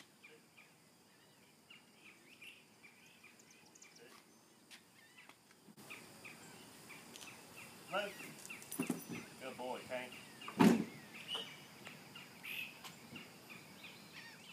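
Faint outdoor ambience with bird chirps, then a few spoken words and one sharp thump about ten and a half seconds in, as a large dog is loaded through an SUV's open rear hatch.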